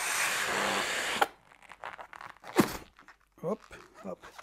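Air hissing out through the neck of a clear latex balloon as it is pressed flat and deflated under a board, cutting off suddenly about a second in. Faint rubbing and handling sounds of the squashed latex follow.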